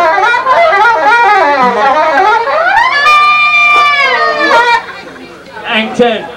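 Live ska band with horns, heard on a camcorder recording. A wavering lead melody slides up into a long held high note about three seconds in. The note falls away near five seconds, when the sound drops back.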